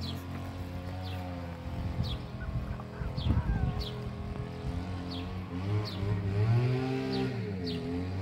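A steady low engine-like hum that rises and falls in pitch over a couple of seconds near the end, with short, high, falling chirps repeating about once a second.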